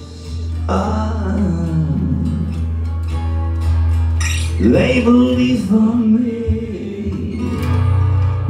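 Live steel-string acoustic guitar strummed under a man's voice singing two drawn-out phrases, one starting about a second in and the other about five seconds in.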